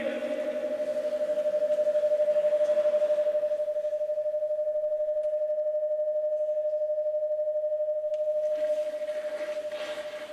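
Public-address feedback: a single steady ringing tone from the church's microphone and loudspeakers, held for about ten seconds. It swells a little in the first few seconds and fades out near the end.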